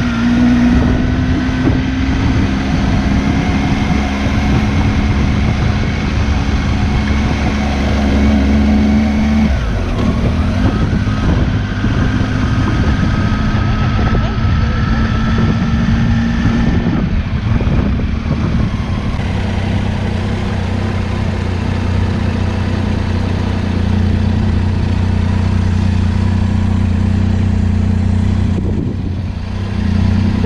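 Motorcycle engine running at low town speed, with wind and road noise. The engine note changes pitch a couple of times, about ten seconds in and again around seventeen seconds, as the speed changes.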